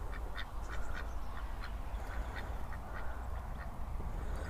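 A small flock of white domestic ducks quacking quietly, short calls coming two or three a second.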